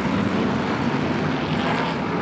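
A pack of BriSCA F1 stock cars racing, their V8 engines running together as one steady, unbroken engine noise.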